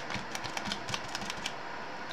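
Light, irregular clicking and tapping of plastic as a gloved hand rubs and presses a small silicone piece against a plastic tray lid, several small ticks a second.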